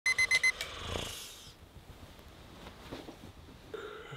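Digital alarm clock beeping: four quick, high electronic beeps in the first half second, then about a second of softer hissing noise that fades away.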